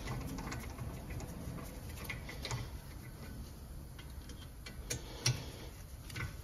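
Hand ratchet clicking in short irregular runs as a brake caliper bolt is turned, with two sharper metallic clicks near the end.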